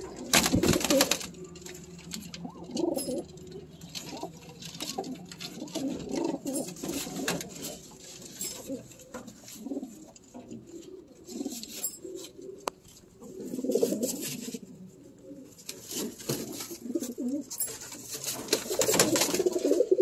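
Domestic pigeons cooing over and over, low and throaty, several birds overlapping. Short loud scuffing noises come about half a second in and again near the end.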